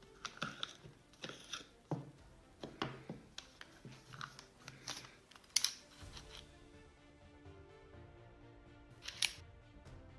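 Small metallic clicks and clacks of a Star DKL pistol being handled as its magazine is removed and the slide is worked to check the chamber, the sharpest click about five and a half seconds in and one more near the end. Faint background music runs underneath.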